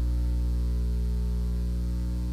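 Steady electrical mains hum picked up in the recording or sound system: a strong low tone with a ladder of steady overtones, easing off slightly in level.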